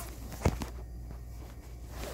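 A single sharp thump about half a second in, over a low steady hum.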